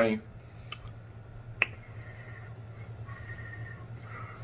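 Quiet steady low hum with a few faint sharp clicks, the clearest about a second and a half in.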